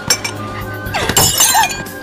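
A crash of something breaking, like glass or crockery, about a second in, over background music.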